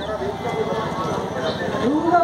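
People talking, voices that the speech recogniser did not turn into words, over a steady low background rumble.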